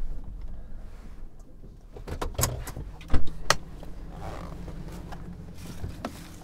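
Pickup truck running at low speed, heard from inside the cab as a steady low rumble, with a few sharp clicks and knocks between about two and three and a half seconds in.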